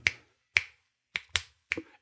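Fingers snapping about five times at uneven intervals, sharp single clicks with silence between them, beaten out to mimic a heartbeat whose beat-to-beat timing varies, as in a high heart rate variability.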